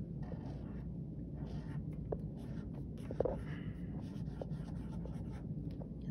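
Felt-tip marker drawing on lined spiral-notebook paper in many short strokes as a cloud outline is sketched, over a steady low room hum.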